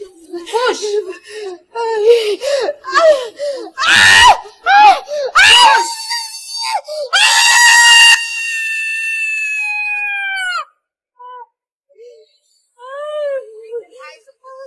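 A woman in labour crying out in pain in short cries while straining to push. About seven seconds in comes a loud, long scream that is held and falls slightly in pitch before breaking off about three seconds later, followed by a few short cries.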